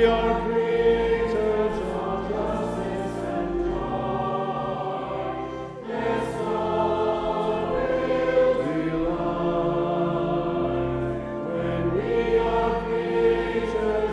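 A hymn sung by many voices with organ accompaniment: long held sung notes over a steady organ bass, with a short break between verse lines about six seconds in.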